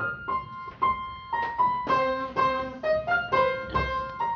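Upright acoustic piano being played by hand: a melody of single notes and chords, struck at about two to three a second, each ringing on briefly.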